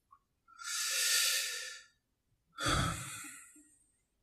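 A man breathing close to a microphone: two breaths, a long hissy exhale from about half a second in and a second, shorter breath near three seconds.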